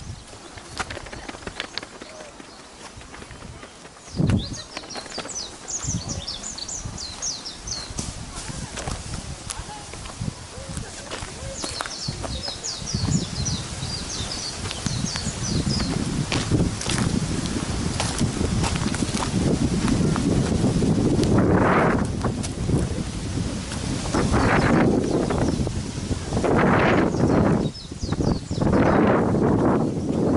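Footsteps on dry leaves and grass while walking over a mound, with a small bird calling in quick runs of high chirps in the first half. A louder, low noise with repeated surges builds through the second half.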